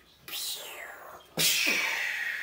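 A young child's voice making two falling, hissing 'pshhh' whoosh sound effects, the second louder, in imitation of arrows shot from a toy bow.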